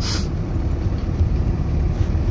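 Steady low rumble of a car being driven, heard from inside the cabin: engine and tyre noise on the road. A short hiss at the very start.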